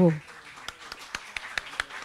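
Sparse applause: a few people clapping, scattered claps at about four or five a second.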